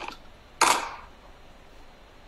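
A brief scrape as an object is handled and picked up, about half a second in.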